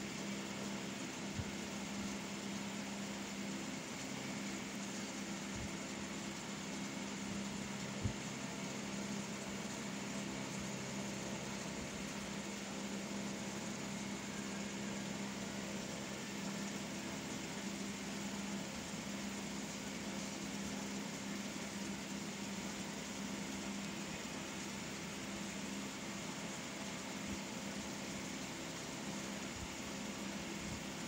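A steady low hum runs throughout, with a few faint low knocks, the loudest about eight seconds in.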